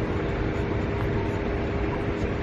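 Steady low rumble of a car rolling slowly, with a faint steady hum running under it.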